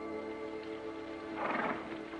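A held chord of orchestral bridging music that fades near the end, with a short horse whinny about a second and a half in.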